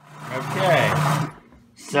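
A person's drawn-out vocal sound, not words, whose pitch bends up and down. It begins abruptly and lasts about a second and a half, and a second, shorter one follows near the end.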